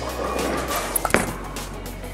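Background music, with a single sharp knock just over a second in as the bowling ball is released and lands on the wooden lane.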